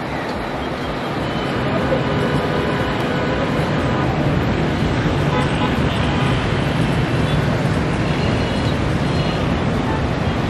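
Dense city road traffic heard from high above: a steady wash of engine and tyre noise with a few short horn notes, growing a little louder over the first couple of seconds.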